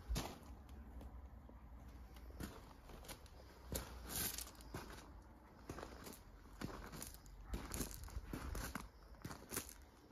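Faint, irregular crunching footsteps on gravel, a step every second or so, with a sharper knock at the very start.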